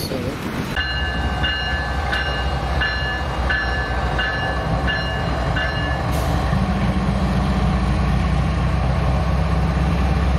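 A double-stack intermodal freight train rumbling past, with a bell, likely a grade-crossing bell, ringing about twice a second for the first six seconds. From about six seconds on, the steady low drone of FEC's GE ES44C4 diesel locomotives, four-stroke V12 engines, takes over.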